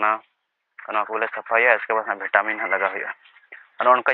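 Speech only: a man talking in short phrases, after a brief pause near the start.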